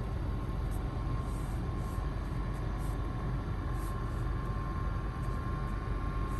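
Steady cabin hum of a car idling with the air conditioning running: a low rumble under a thin, steady whine, with a few faint ticks.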